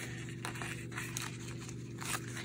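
Faint rustling of paper and thread as hands pull a tacket stitch taut through a paper envelope book, with a few light handling clicks over a low steady hum.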